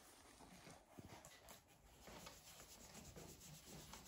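Faint, irregular scratching and rubbing of charcoal strokes on sketch paper, over quiet room tone.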